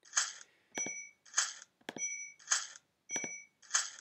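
Online scratchcard game sound effects as panels are clicked open: about four short scratching swishes roughly a second apart, each with a sharp mouse click and a brief bright chime.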